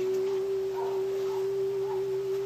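A single steady, nearly pure held tone at one unchanging pitch.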